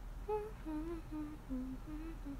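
A woman humming a tune softly: a string of short held notes that mostly step down in pitch, then rise again near the end.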